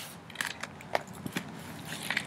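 A few faint, scattered clicks over quiet background noise.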